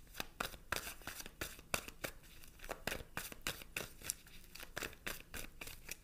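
A deck of tarot cards being shuffled by hand: a steady run of soft, sharp card snaps, about three or four a second.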